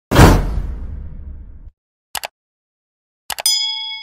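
Stock subscribe-button animation sound effects: a loud whoosh with a deep rumble that fades over about a second and a half, then two pairs of quick mouse clicks, then a bell ding that rings on near the end.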